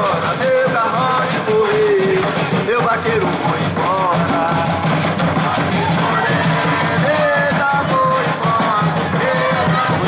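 Congada music: a sung melody over steady, dense percussion, continuous and loud.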